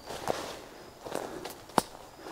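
Footsteps through dry fallen leaves on a woodland path, a few soft rustling steps, with one sharp click near the end.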